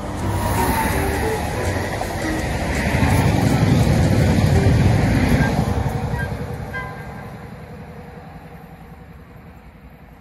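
ÖBB Talent electric multiple unit passing at speed: wheels rumbling and rushing on the rails, building to a peak about four seconds in, then fading steadily as the train runs away.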